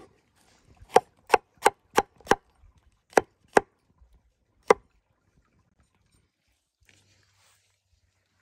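Cleaver-style knife chopping through a porcini mushroom onto a wooden cutting board: about nine sharp knocks over the first five seconds, a quick run of them about three a second in the middle.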